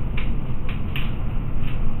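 A few light clicks and rustles as the padded front chest piece of a spinal back brace is picked up and handled, over a steady low rumble of background noise.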